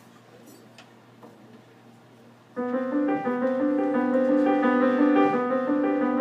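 A low room hum with faint ticks, then about two and a half seconds in a keyboard suddenly starts playing sustained, held chords that change every second or so. This is the opening of the jazz tune.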